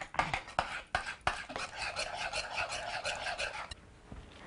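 Egg, sugar and butter mixture being stirred briskly in a ceramic bowl with a metal utensil. It starts with a run of clicks against the bowl, then turns to quick, rhythmic scraping that stops shortly before the end.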